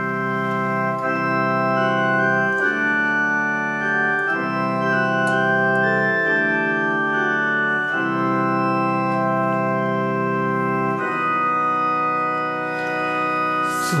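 Organ playing a slow instrumental introduction to a Eucharistic hymn, sustained chords held and changing every couple of seconds.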